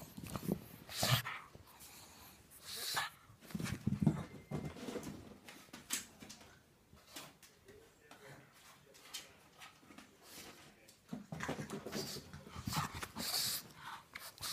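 Sounds of a pug playing fetch close to the microphone, in irregular short bursts with a quieter stretch in the middle.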